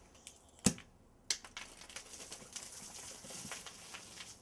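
Champagne bottle uncorked: one sharp cork pop early on, followed by a few seconds of crackling fizz.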